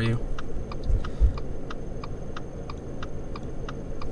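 Light, evenly paced ticking, about three ticks a second, over a low steady hum inside a car cabin.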